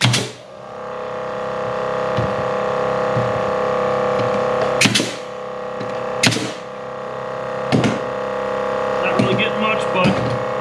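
Pneumatic Paslode framing nailer driving nails into a board: one sharp shot at the very start, then three more spaced about a second and a half apart. Under the shots a Milwaukee M18 air compressor starts about half a second in, rises over a second or two and then runs with a steady hum.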